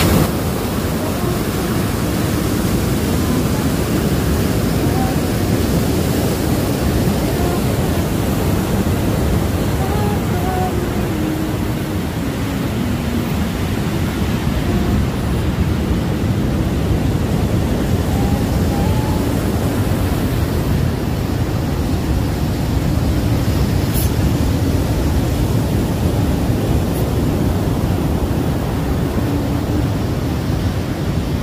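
Loud, steady ocean surf, with a woman singing faintly under it, mostly in the first half.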